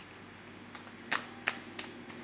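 A few light, sharp clicks, four in just over a second, over faint room hiss.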